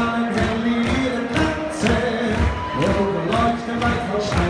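A Bavarian brass band of tubas and trumpets playing a beer-tent song with a steady beat, about two beats a second, while a singer sings over it on a microphone.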